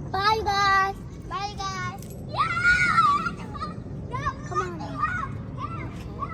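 Children's high-pitched voices calling out: two drawn-out calls, a louder held call, then a run of short calls, as they shout goodbye to their friends.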